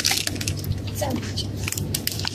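Plastic grocery packaging crinkling and rustling as items in a wire shopping cart are handled, over a steady low hum.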